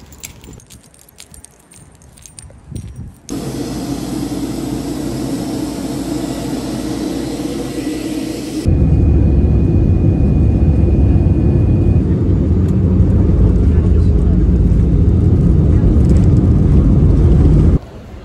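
Airliner cabin noise from a window seat during takeoff. About three seconds in, a steady hiss and hum comes in. Nearly nine seconds in, it gives way to a much louder, dense low rumble of the jet engines at takeoff power, which holds until it cuts off just before the end.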